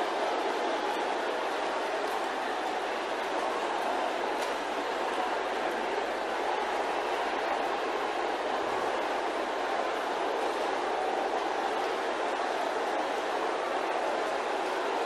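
A large congregation praying aloud all at once, a steady roar of many overlapping voices with no single voice standing out.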